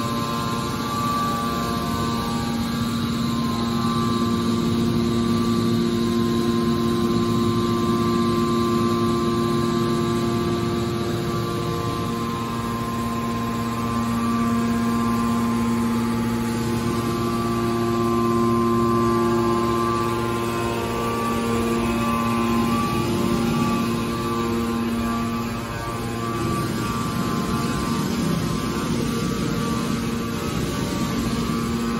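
Hydraulic power unit of a scrap metal baler, its electric motor and pump running with a steady hum made of several held tones. The tones shift a little after about twenty seconds, then settle again.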